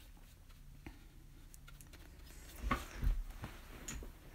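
Faint brushing of a paintbrush laying a wash of paint on watercolour paper, with a couple of soft knocks about three seconds in.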